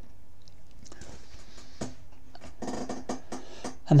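Watercolour brush rubbing and swishing against the palette and paper, soft and scratchy, busiest in the last second and a half as turquoise paint is picked up and laid on; a couple of faint clicks earlier.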